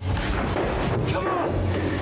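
Film soundtrack: a dense rumbling noise over a steady low drone that cuts in suddenly, with a faint voice-like sound partway through.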